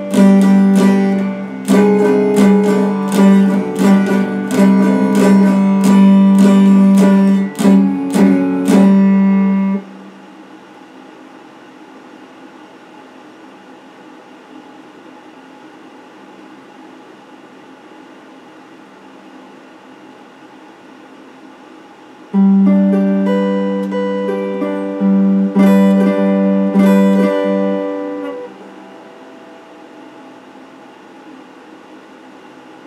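A Stratocaster-style electric guitar picked note by note, with a strong sustained low note under the melody. The playing stops about ten seconds in, leaving a steady low hiss for about thirteen seconds. It resumes for about six more seconds near the end.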